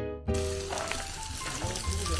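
Background music with plucked notes, then from about a third of a second in a steady sizzle of meat cooking in a foil tray over a campfire, with the music still playing underneath.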